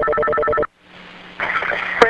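Telephone ring tone on a recorded 911 call line, a steady tone that cuts off about two-thirds of a second in. After a brief dead gap a faint hum and then line hiss come in as the call connects.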